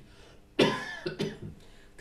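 A person coughing: a sudden loud cough about half a second in, followed by a smaller second cough.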